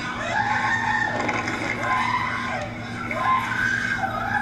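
Several people shouting and screaming in high, strained voices that rise and fall, during a scuffle as courtroom deputies restrain a man.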